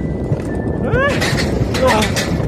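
Alpine coaster sled running fast along its tubular steel rails, a steady heavy running noise. A rider gives a high rising-and-falling whoop about a second in and a shorter yell near the end.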